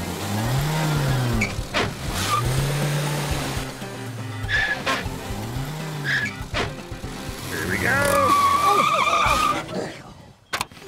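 Cartoon car sound effects for a small car: the engine revs up and falls back three times as it drives, then the tyres screech loudly for about a second and a half near the end as it brakes to a stop.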